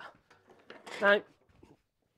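Mostly speech: a man says "Now" about a second in. Before it there are only a few faint ticks and knocks.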